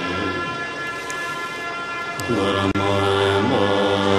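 Massed voices of a Tibetan Buddhist assembly chanting in unison, a low sustained drone with steady overtones. The chanting thins and softens for about two seconds, then the full chorus comes back in strongly, with a momentary cut-out in the audio shortly after.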